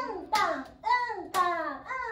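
A woman's voice chanting a rhythm pattern in drawn-out, falling syllables ('un, tan'), with handclaps marking the beats about a second apart.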